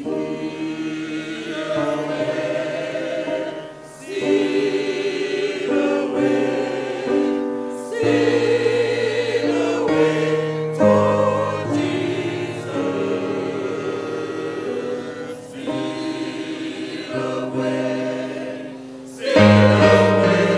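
Mixed choir of men's and women's voices singing in harmony, sustained chords sung in phrases a few seconds long with brief breaks between them.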